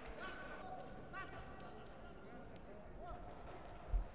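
Quiet sports-hall ambience with faint, distant voices echoing in the arena, and a single dull thump near the end.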